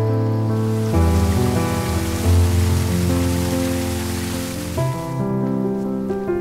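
Water rushing and splashing down a narrow stone irrigation channel: a dense, steady hiss that fades in about half a second in and stops about five seconds in. Background music with sustained notes plays underneath throughout.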